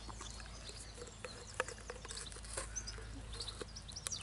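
Miniature Shetland pony biting and chewing a frozen ice lolly: faint, irregular crunches. A bird chirps faintly in the background.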